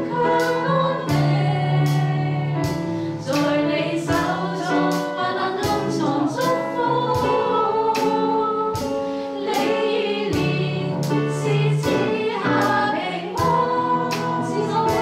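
Group singing of a gospel worship song over electronic keyboard accompaniment, with a steady beat.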